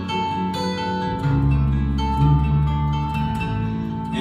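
Live bluegrass-style string band playing an instrumental introduction: strummed and picked acoustic guitars and mandolin over a moving bass guitar line, with long held high notes from a fiddle.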